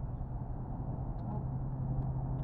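Kawasaki Ninja sport bike engine idling steadily with a low, even hum.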